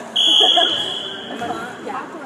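Volleyball referee's whistle blown once: a single steady high-pitched blast of about a second, signalling the server to serve.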